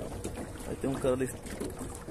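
Low, steady wind and water noise on a small open boat. A brief snatch of a voice comes about a second in.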